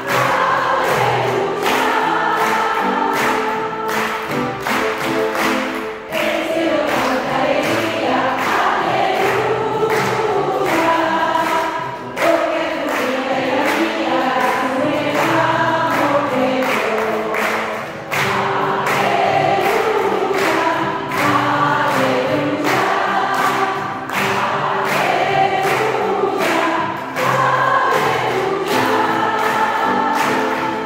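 A congregation of women singing a hymn together, with keyboard accompaniment and a steady beat running through it.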